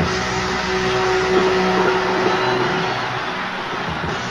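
Arena crowd cheering and whistling at the end of a song, on a live soundboard recording, with a single held note from the stage ringing over the noise until it dies away about three seconds in.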